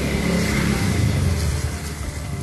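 A motorcycle engine running as the bike passes by on the street, louder than the surrounding voices.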